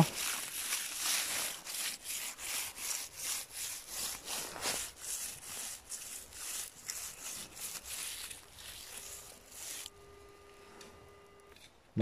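A metal detector's search coil is swept low over the forest floor, rustling and scraping through dry, snow-dusted leaves in a steady rhythm of two to three strokes a second. Near the end the rustling stops and the Garrett AT Pro detector gives a held electronic tone for about two seconds, a low note joined by a higher one. The tone is its signal for buried metal.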